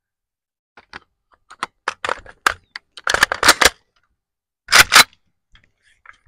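A string of irregular sharp clicks and knocks, thickest about three seconds in, with a louder close pair near five seconds.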